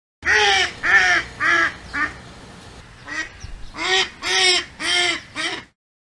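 Duck quacking: a run of four loud quacks, a short pause with one soft quack, then another run of four.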